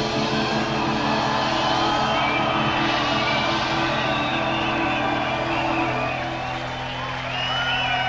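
Live concert music with held low tones, thinning out about six seconds in, with the audience whooping and whistling near the end.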